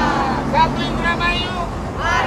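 Several people's voices calling out together, over a steady low engine hum.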